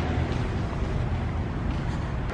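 Wind buffeting a handheld phone microphone outdoors, making a steady low rumble with a hiss above it.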